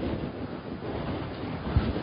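Low rumbling background noise of a lecture room picked up by the microphone during a pause in speech, with a soft low thump near the end.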